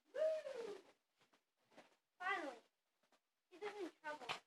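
A child making wordless vocal sounds: three short cries that fall in pitch, the first the longest.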